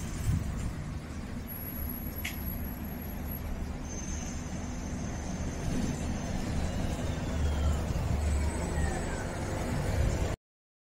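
Street traffic: road vehicles running past with a steady low rumble, and a faint high whine falling in pitch in the later seconds.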